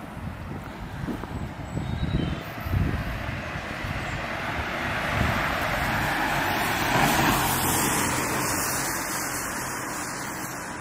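A car driving past on the street, its tyre and engine noise swelling to a peak about seven seconds in and then fading. Low rumbling buffets, typical of wind on the microphone, come in the first three seconds.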